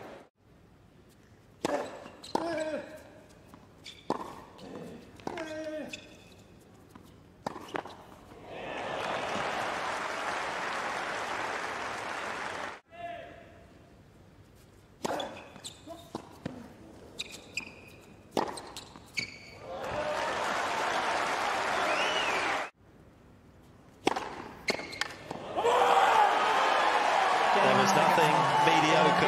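Tennis rallies on a hard court: sharp racket-on-ball hits and bounces in quick runs. Between points the crowd applauds and cheers, loudest and longest near the end.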